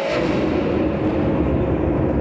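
Staged explosion sound effect played through theatre speakers: it comes in suddenly with a deep rumble and slowly dies away.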